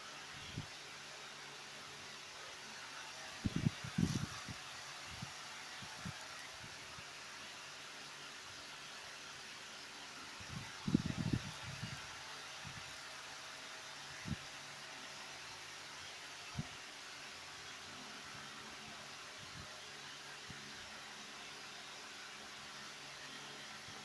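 Faint steady hiss of room noise with a few soft bumps and rustles of makeup items being handled, the loudest a few seconds in and again about halfway through.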